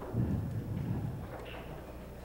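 Pool cue striking the cue ball, then a low rumble of the ball rolling across the table cloth for about a second.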